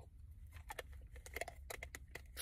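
Faint run of small clicks and taps from someone drinking from a bottle of iced tea, over a low steady hum.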